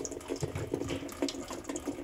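Water running into the tub of a Maytag MVWP575GW top-load washer as it fills a little at the start of its drain-and-spin cycle, with a fast, even pulsing underneath. The washer wets the bottom of the tub, which the owner guesses is for the pump.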